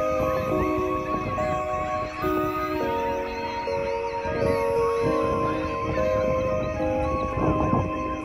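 Soft background music of slow held chords that change step by step, with many short bird calls over it.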